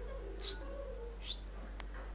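A toddler's brief squeaky, cat-like vocal sounds, with two short hissy bursts about a second apart and a small click near the end.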